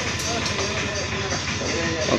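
A steady low hum with faint held tones over it, running evenly with no distinct knocks or strokes.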